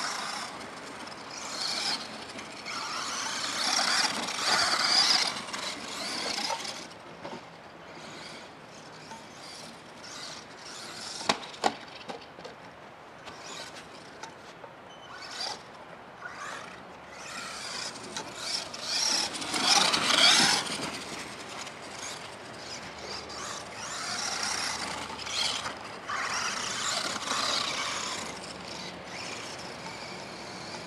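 Traxxas 1/16 Summit VXL brushless electric RC truck being driven hard across grass, working its motor under load. Its motor and drivetrain noise comes in several bursts as the throttle goes on and off. There is a single sharp knock about eleven seconds in.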